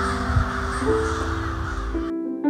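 A large winter roost of American crows cawing all together at dusk, a dense, continuous chorus of many overlapping calls. Slow piano music with held notes plays over it.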